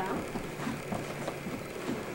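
Quiet room noise with faint voices murmuring in the background.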